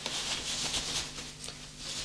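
Soft rustling and rubbing of a cloth doll's dress being pulled up over a large plastic doll's legs, with a faint steady low hum underneath.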